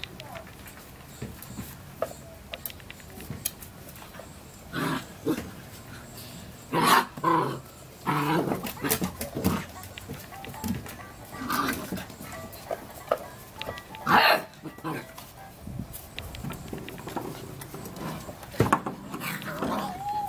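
Puppies barking and yipping in short, scattered bursts while they play together.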